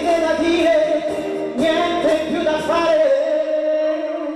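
A man singing a pop song into a handheld microphone over a backing track, moving between notes and then holding one long note near the end.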